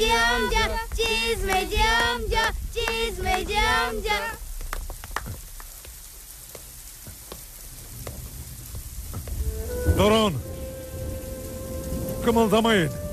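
A group of boys shouting together in short, repeated high-pitched calls for about four seconds, then steady rain falling on pavement with scattered drips. Near the end comes one more shouted call over a held musical note.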